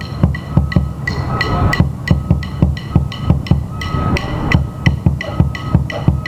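Drum corps battery, snare drums and bass drums, playing together in a steady rhythm: crisp snare strokes over a close run of low bass drum beats.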